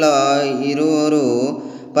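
A man's voice in a long, drawn-out, chant-like tone whose pitch slowly wavers, fading away shortly before the end.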